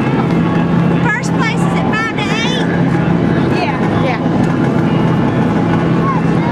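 A steady engine drone, with high voices calling out about a second in and again near four seconds.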